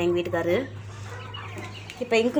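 Country chickens calling: a wavering, drawn-out call for the first half second or so, then quieter, with faint high peeps.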